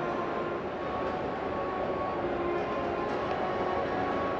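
Steady exhibition-hall ambience: a constant wash of crowd noise with faint background music playing over it.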